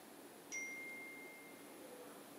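A single notification ding: one clear tone that starts about half a second in and fades away over about a second.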